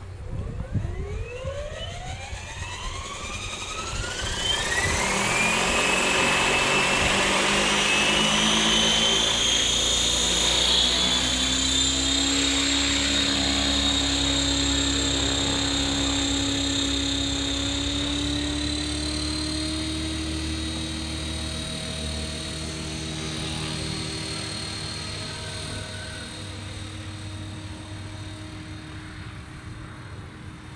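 Electric RC helicopter, a Blade Fusion 480 stretched to 550, spooling up: the motor and rotor whine rises steeply in pitch over the first few seconds, then holds steady as it lifts off and hovers. The sound fades slowly in the last third as it flies away.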